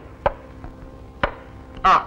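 Two sharp knocks about a second apart over a faint steady hum, then a man's short 'aa' near the end.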